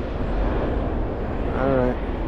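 A steady low rumble with a short snatch of voice near the end.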